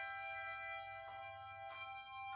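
Handbell choir ringing a slow piece: struck chords of handbells whose tones ring on and slowly fade, with fresh strikes a little past a second in and again shortly after.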